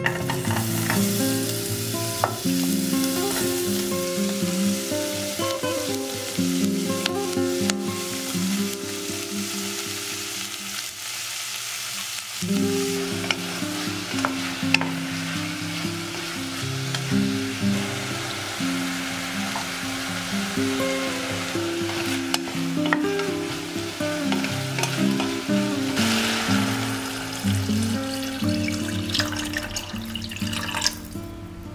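Sliced onions and diced meat sizzling in oil in an enamel saucepan, stirred with a wooden spatula. Background acoustic guitar music plays throughout.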